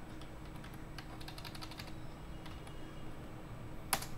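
Faint computer keyboard and mouse clicking: a quick run of clicks between about one and two seconds in, a few more after, then one sharper click at the very end.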